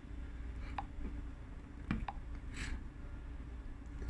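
Quiet room tone: a low steady hum with a few faint, short ticks.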